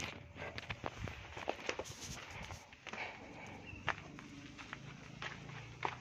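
A person's footsteps on dry, leaf-strewn dirt, with irregular scuffs and light knocks from the phone being handled, after one sharp knock at the start.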